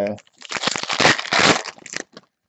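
Foil trading-card pack wrapper crinkling as it is handled and torn open, a dense run of crackles lasting about a second and a half.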